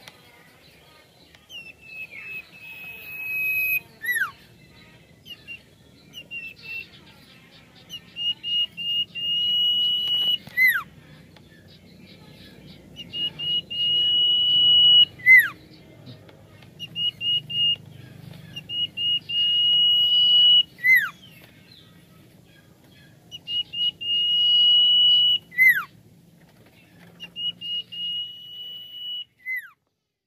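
Common iora (cipoh) singing: a few short notes lead into a long, steady whistle that ends in a sharp downward-slurred note. The phrase repeats about every five seconds.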